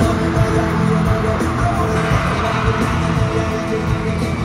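Live concert music played loud over an arena sound system, with heavy bass and long held notes, recorded from within the audience.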